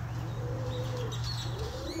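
White pigeon cooing: one low, drawn-out coo that slowly falls in pitch and ends a little before the close.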